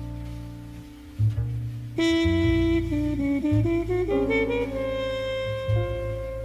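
Slow jazz ballad: soft sustained piano chords over double bass, then a horn enters about two seconds in with a slow melody, moving note by note over the bass.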